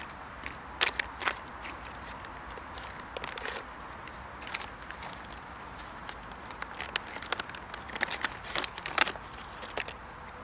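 Crinkling and crackling of a foil-laminate MRE pouch being handled and opened to take out the tortillas, in scattered crackles and clicks that thicken near the end.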